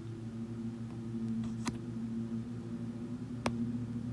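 A steady low hum with two sharp clicks, one about a second and a half in and a louder one near the end.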